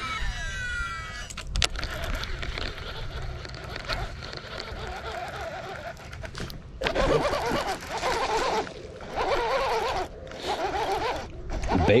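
A cast with a baitcasting reel: the spool whines with a sliding pitch for about a second at the start, followed by a steady noisy stretch.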